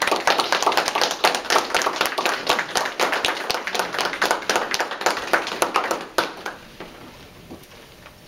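Applause from a small group of people clapping their hands, dense and steady, thinning out and stopping about six and a half seconds in.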